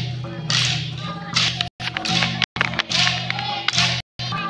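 Mandar drums, two-headed barrel drums, beaten in a dance rhythm: sharp slapping strokes over steady low tones. The sound cuts out briefly twice.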